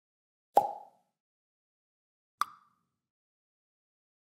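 Two short pop sound effects from a subscribe-button animation: the first, about half a second in, is lower and slightly longer; the second, about two and a half seconds in, is higher and shorter.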